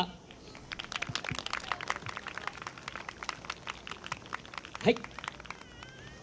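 Scattered hand clapping from a small audience, many irregular claps that fade out after about four seconds.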